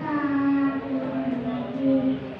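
A voice chanting Quran recitation in the melodic tilawah style, holding one long note that sinks slightly in pitch and swells near the end.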